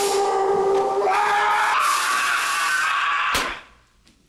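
A man's long sustained yell that steps up in pitch twice, cut off by a sharp crash near the end, after which the sound drops away to near silence.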